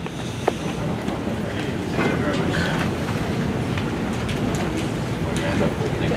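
Hubbub of a room full of people chattering and moving about, a steady low murmur of voices, with a single sharp knock about half a second in.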